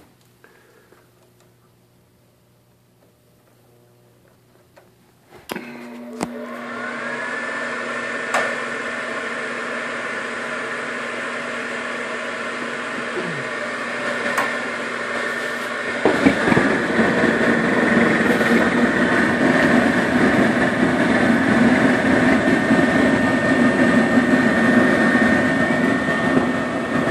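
Propane-converted gas furnace answering a call for heat. After about five seconds of low room tone a click is heard and the draft inducer motor starts, whining up to a steady hum. About ten seconds later a louder, steady rushing sound joins suddenly as the burners light.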